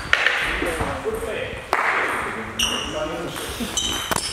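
Table tennis balls clicking and pinging in a sports hall, with a sharp knock a little under two seconds in, over murmured talk from people in the hall.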